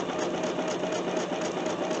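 Bernina 770QE sewing machine running at a steady speed, stitching a seam through strips of quilting cotton. The hum is even, with a faint constant tone.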